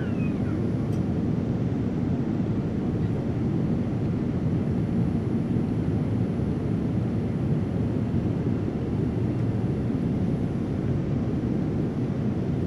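Steady low drone of a Boeing 787-9 passenger cabin in cruise flight: engine and airflow noise heard from inside the cabin, unchanging throughout.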